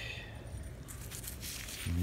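Gloved fingers rubbing soil off a 1906 silver one-mark coin held in the hand: faint, brief scraping and rustling.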